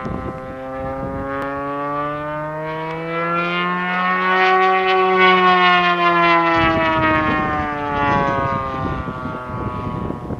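Engine of a Top Flite P-51 Mustang radio-control model, an MT-57 swinging a 21.5x10 carbon-fibre prop, running at power through a loop. Its note climbs steadily to a peak about halfway through, then falls away.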